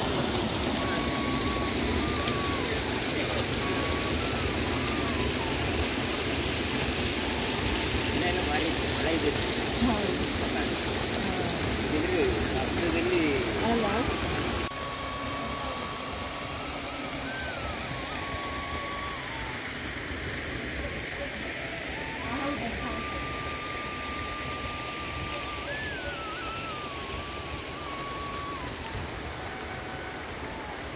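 Water running and gurgling into a pond or stream, cut off abruptly about halfway through by a change to quieter outdoor ambience. A thin, high line of held notes with short slides up and down runs through both halves.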